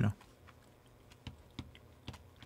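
A few faint, scattered clicks of typing on a laptop keyboard.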